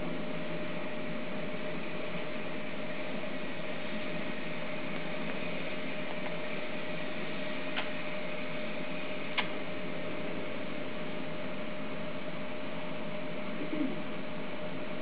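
Steady background hiss with a faint steady hum, and two faint clicks about eight and nine and a half seconds in.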